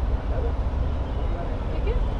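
Steady low background rumble with no distinct event.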